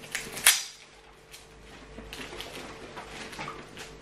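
Plastic wrap being pulled off an iPhone box: a sharp snap about half a second in, then soft crinkling and light ticks of fingers handling the wrap and box.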